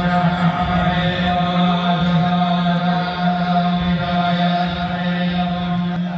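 Hindu priests chanting mantras into microphones, amplified through a loudspeaker system, on a steady droning pitch.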